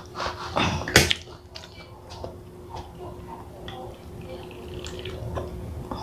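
A plastic water bottle being handled and opened, with a sharp click about a second in, then soft gulps and swallows as water is drunk to wash down a dry mouthful of food.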